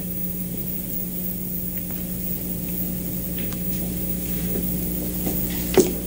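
A steady low hum with faint hiss, the background of an old television recording, and one short knock near the end.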